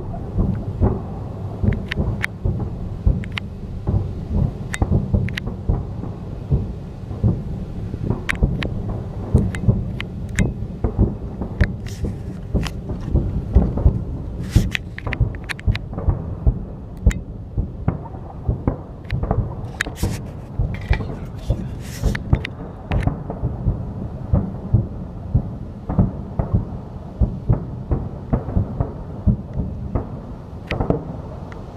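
Distant shelling: a continuous rumble of explosions with many sharp cracks, several a second, busiest in the middle.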